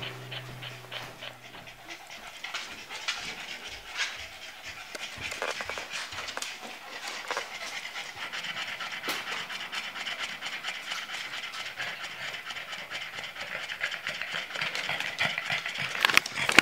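Boston terrier panting rapidly and steadily, tired out after a walk.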